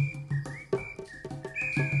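Ambient new-age music: a high tone that glides up into short held notes, over quick struck notes and a low, evenly pulsing drum.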